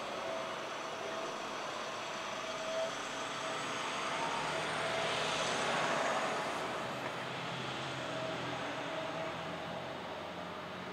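Steady vehicle noise: a vehicle passes and swells to its loudest about five to six seconds in, then fades, over a faint steady hum.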